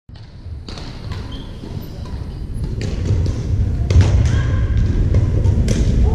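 Badminton rackets striking shuttlecocks in a gym: about half a dozen sharp, separate smacks at irregular intervals, over a steady low rumble of the hall.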